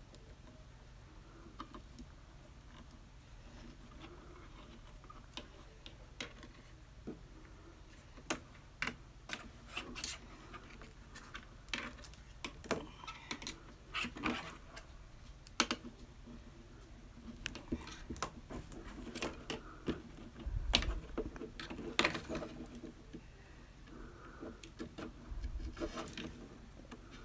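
Baling wire being twisted and bent by hand: scattered small clicks, ticks and scraping rubs of wire against fingers, growing busier about a third of the way in, with a couple of dull bumps on the table near the end.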